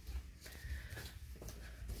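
Footsteps climbing carpeted stairs: faint, muffled, irregular thuds.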